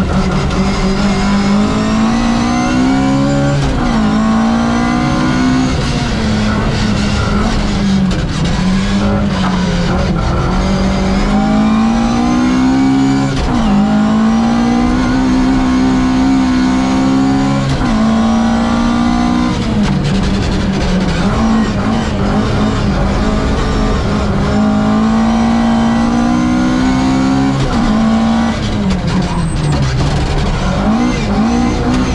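Inside the cabin of a 1600 Mk2 Ford Escort rally car, its four-cylinder engine is revving up through the gears at full speed. The pitch climbs and then drops sharply at each gear change, about every four to five seconds.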